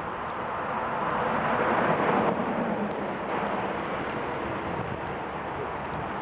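Rushing outdoor noise of wind on the microphone and traffic, swelling to its loudest about two seconds in, then settling.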